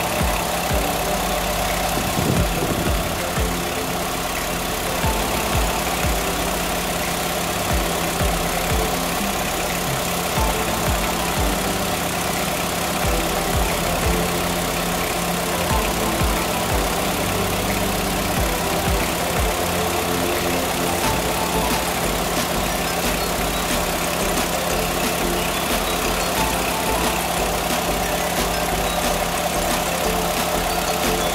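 Car engine idling steadily.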